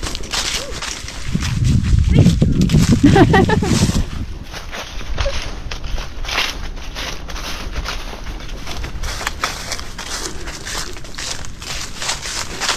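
A hiker's footsteps on a forest trail, a step roughly every second. About two seconds in comes a louder low rumble lasting a couple of seconds, with a brief voice-like sound over it.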